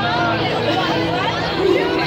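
A crowd talking: many overlapping voices in an unintelligible babble.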